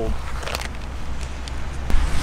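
Outdoor wind rumbling on the microphone, with two faint clicks, one about half a second in and one near the end.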